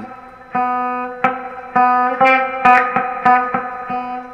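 Clean electric guitar picking the strings of an open E major chord one at a time, about eight notes that come quicker toward the end, each ringing out clear.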